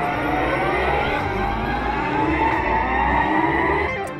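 Mighty Cash Ultra slot machine's electronic reel-spin sound, a layered tone that climbs steadily in pitch like a siren as a lit-up reel spins, the anticipation build-up for a bonus symbol. It cuts off suddenly near the end as the reels stop without a win.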